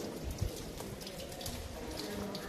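Steady low background noise with a few faint clicks, the loudest about half a second in.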